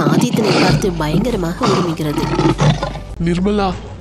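A lion roaring sound effect, with a low rumble that starts about a second in, mixed with a woman's voice.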